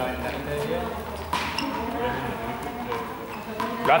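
Voices talking in the background of a large, echoing sports hall, with two sharp ball thuds, one about a second in and one near the end.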